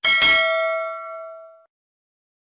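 Notification-bell sound effect: a single bright bell ding with a sharp start, ringing out and fading away over about a second and a half.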